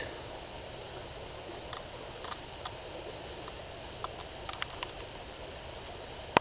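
Quiet steady background hiss with a few soft, scattered clicks and rustles of close handling.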